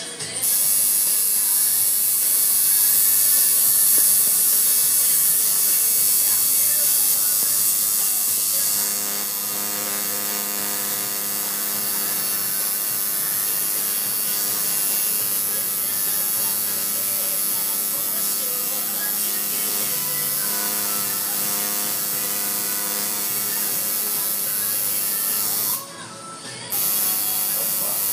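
Coil tattoo machine buzzing steadily while inking skin. It cuts out briefly near the end, then starts again.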